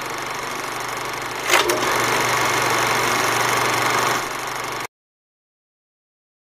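Film projector sound effect: a steady mechanical running rattle with a sharp crackle about a second and a half in, cutting off abruptly about five seconds in.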